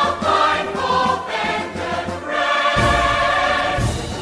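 Many voices singing together over a loud band or backing track, heard live; a long held note fills the last second and a half, with heavy bass coming in under it.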